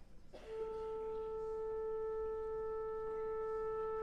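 A single long note held steady by a wind instrument, starting about half a second in, in a concert hall.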